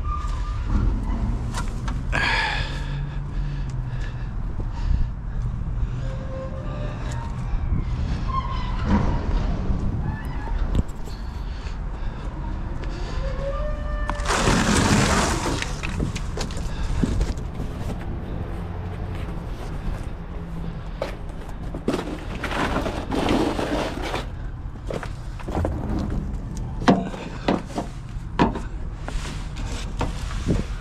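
Hand-tool and parts-handling noises while unfastening interior panels: scattered clicks, knocks and brief squeaks over a steady low hum, with a rushing burst of noise lasting about two seconds a little past the middle.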